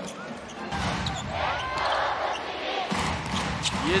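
A basketball dribbled on a hardwood court, giving a series of short bounces over the steady background noise of an indoor arena.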